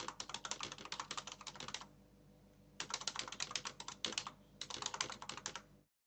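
Rapid typing on a computer keyboard, a fast run of key clicks in three bursts with a pause of about a second after the first.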